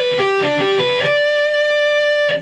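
Electric guitar playing a sweep-picked G major arpeggio: quick single notes step down and back up the top strings with a pull-off on the high E string, then a high note rings out for about a second.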